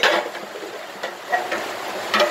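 A sharp knock or clatter at the start, then fainter bumps of objects being handled about a second in, over a steady background hiss.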